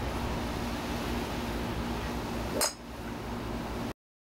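Steady outdoor background noise with a faint hum. One sharp metallic clink about two and a half seconds in, after which the background is quieter. The sound cuts off abruptly just before the end.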